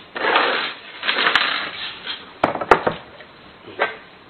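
Handling noise from fitting a moisture-proof gasket onto a smart lock's rear panel: two spells of crinkly rustling, then a few sharp clicks and taps, the loudest nearly three seconds in.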